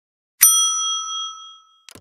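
A single bright bell ding, the notification-bell sound effect of a subscribe animation, struck once and ringing out over about a second. A faint click comes just after the strike, and a short click near the end.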